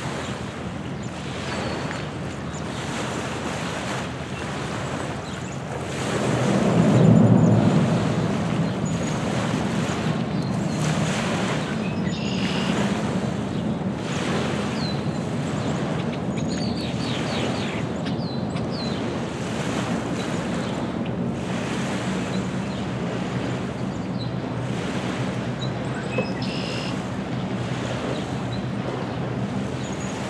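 Small lake waves lapping and breaking on a pebbly shore, with wind on the microphone. About six seconds in, a low rumble swells up and settles into a steady low drone under the waves.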